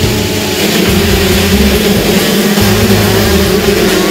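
A pack of two-stroke motocross bikes revving hard together, over a music track with a stepping bass line.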